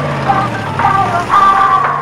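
A convertible car's engine running as the car pulls away, with the song's closing music still playing, about as loud as the engine.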